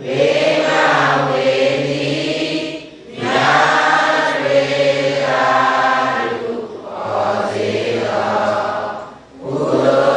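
A congregation of Buddhist lay devotees chanting together in unison, in long held phrases with short breaks for breath about three, seven and nine seconds in.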